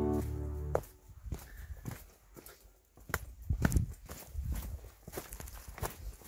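Background music cuts off within the first second, then footsteps on a rocky trail: irregular scuffs and steps, with a few louder ones near the middle.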